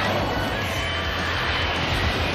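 A steady rushing roar of noise, of the aircraft-engine kind, with a faint high tone running through it.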